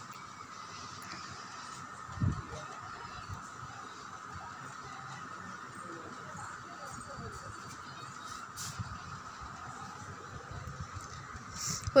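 A metal spoon stirring and scraping dry semolina and sugar around a nonstick kadai as the mixture dry-roasts on the stove, with faint scrapes, one louder knock about two seconds in and a steady hum underneath.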